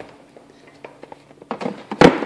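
Faint clicks and light taps of things being handled on a shelf as a hand reaches for a flashlight, a few scattered at first and busier near the end.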